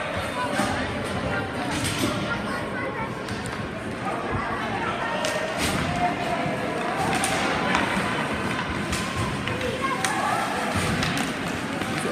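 Youth ice hockey game play: skates on the ice, scattered sharp knocks of sticks and puck, and voices calling out across the rink.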